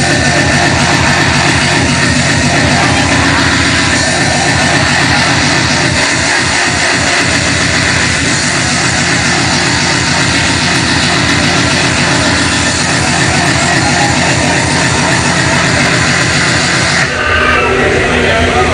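Hardcore industrial electronic dance music from a DJ set, played loud over a club sound system, with a fast, steady beat. About a second before the end the sound thins out for a moment.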